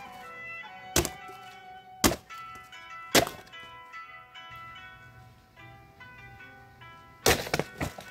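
Background music with sharp hits about once a second in the first few seconds. Near the end, a Regal Makaku Damascus katana hacks into stacked cardboard boxes in a quick run of thuds, without cutting cleanly through.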